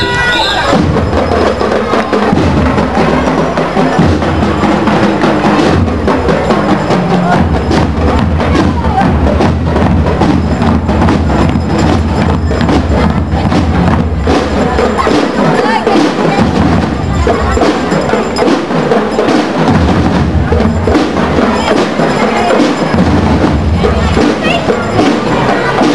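Drum and lyre band playing a marching piece: bass and snare drums beating out a steady rhythm with bell lyres ringing over them.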